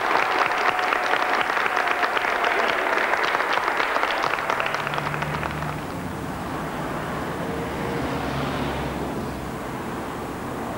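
An audience applauding, the clapping thinning and fading out about halfway through. It gives way to city street traffic, with cars passing and a low engine rumble.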